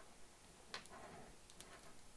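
Near silence with a few faint plastic clicks and light rubbing as a snagless boot is worked along an Ethernet cable toward its RJ45 connector, a tight fit.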